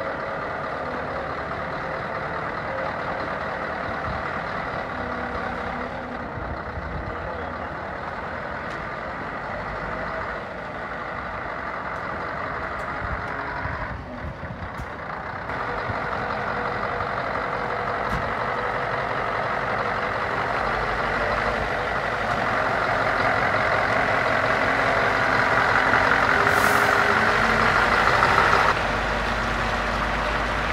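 Scania V8 diesel truck engine running as the heavy crane truck drives about, growing steadily louder as it comes near and passes close. A brief hiss of air comes near the end.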